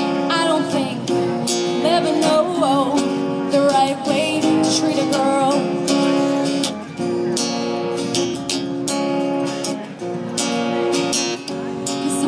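Acoustic guitar strummed in steady chords, with a woman's singing voice coming in over it in phrases and dropping out between them.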